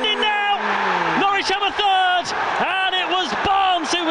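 A football commentator's voice calling a goalmouth scramble as the ball goes in, over crowd noise in the stadium.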